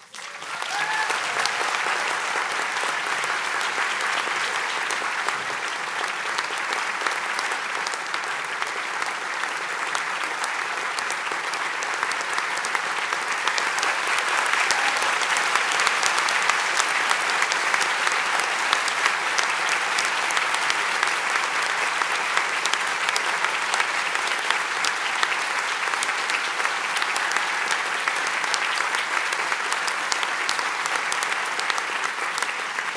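Large audience applauding: the clapping starts abruptly and goes on steadily, swelling a little about halfway through.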